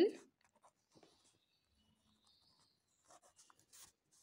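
Ballpoint pen writing on squared notebook paper: faint, short scratching strokes, clearest in the last second.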